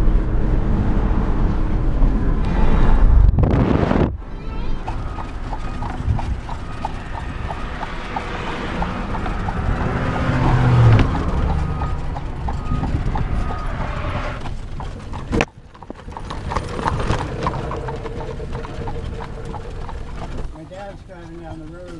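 A horse's hooves clip-clopping in a steady rhythm on a paved road, heard from the horse-drawn buggy it is pulling. In the first few seconds, before the hoofbeats, there is a louder low rumble of car road noise.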